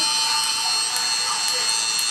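Steady electric buzz of a tattoo machine, a sound effect laid over the picture to make the pricking of a banana peel sound like tattooing.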